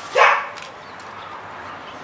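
A young dog barks once, a single short bark shortly after the start.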